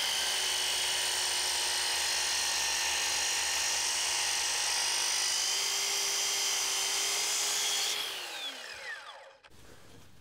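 Electric mitre saw running with its blade in pine timber, a steady high whine. About eight seconds in it is switched off and the whine slides down in pitch as the blade winds down.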